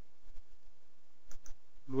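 Computer mouse clicks: two pairs of short, faint clicks, about a quarter second in and again about a second and a half in, as menu items are picked.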